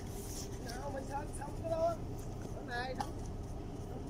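People talking in the background in short snatches, over a steady low rumble.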